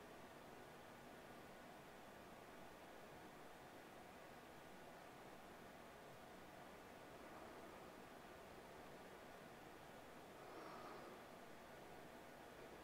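Near silence: faint, steady room tone with a slight swell near the end.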